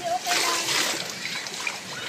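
Swimming-pool water splashing and sloshing around people standing in it, strongest in the first second and lighter after, with a brief voice at the very start.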